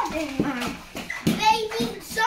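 Young children's high-pitched voices, calling out and chattering without clear words.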